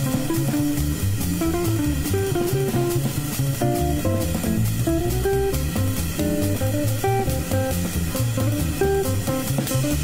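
Jazz guitar trio playing: an archtop guitar plays a single-note melody line over a plucked double bass and a drum kit keeping time on the cymbals.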